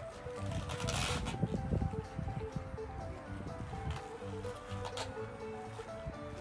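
Background music with a steady melody and bass line, with a brief burst of hiss about a second in.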